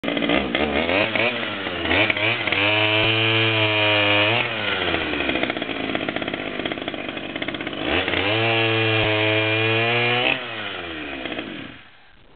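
Pioneer two-stroke chainsaw blipped a few times, then revved up to full throttle and held there twice for about two seconds each, dropping to a lower speed in between. After the second rev it drops back, then goes quiet just before the end.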